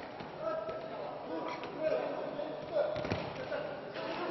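Voices shouting and talking in a large, echoing sports hall, with a thud of wrestlers' bodies hitting the mat about three seconds in.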